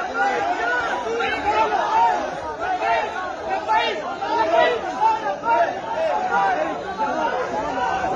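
A crowd of men all talking at once, many voices overlapping in a continuous chatter.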